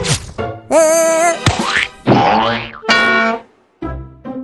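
Cartoon sound effects over children's background music. A quick falling whoosh comes first, then a wobbling boing about a second in, then several sliding glides that rise and fall. The sound drops out briefly just before the music picks up again near the end.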